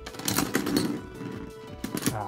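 Metal Fight Beyblade tops (Dark Gasher, Dark Libra, Dark Wolf) clattering and rattling against each other in a plastic stadium as they lose spin. It is loudest in the first second, over background music.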